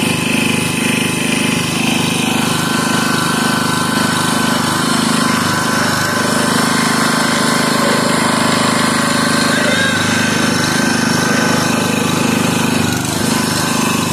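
Tractor engine running steadily, powering a three-point-hitch wood splitter while a block of firewood is pushed against the wedge and split.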